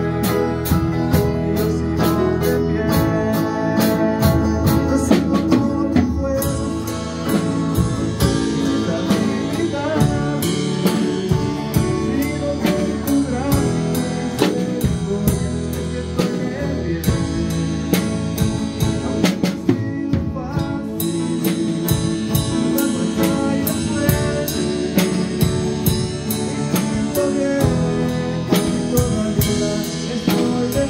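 A small live band playing a worship song: electric guitar, an acoustic drum kit keeping a steady beat with busy cymbal strokes, and grand piano, with a man singing over it.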